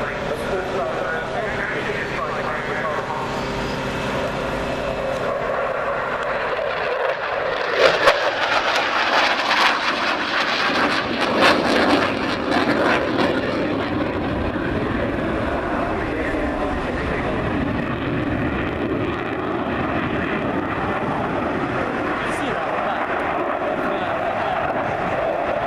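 Jet aircraft flying a display pass. Its engine noise swells sharply about seven seconds in, rough and uneven for several seconds, then settles into a steady rushing sound.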